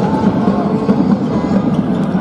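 Crowd noise and voices echoing in an indoor sports hall during a handball match.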